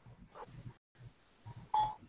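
Google Hangouts notification chime: one short ding near the end, over faint background noise. It signals that a participant has joined the call.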